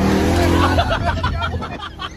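Jeep Grand Cherokee Trackhawk's supercharged V8, tuned to about 1300 horsepower, at full throttle on a hard launch: the engine note rises as a loud rush of engine and road noise comes in suddenly at the start and eases over the next two seconds, with a voice over it.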